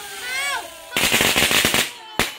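A string of firecrackers going off: a rapid, dense run of sharp cracks starting about halfway through and lasting just under a second. A brief voice is heard at the start.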